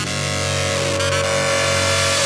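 Bass house music in a drumless breakdown: a sustained synth chord held over a steady bass note, with a few downward-sliding synth tones.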